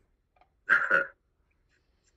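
A man's brief wordless vocal sound, about half a second long, a little under a second in, as he reacts to a question before answering.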